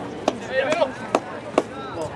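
Soccer ball being kicked and touched by players' feet: three sharp knocks, with a player's short shout between the first two.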